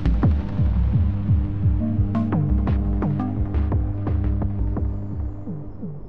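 Eurorack modular synthesizer patch playing: a low throbbing pulse and held drone tones under repeated clocked percussive hits that drop in pitch, with a few sharp clicks about two to three seconds in. The sound gets gradually quieter toward the end.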